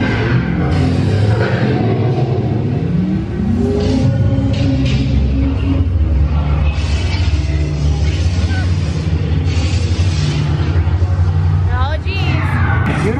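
Dark-ride onboard soundtrack playing loudly: a heavy, steady low rumble with music and sound effects, and voices coming and going over it.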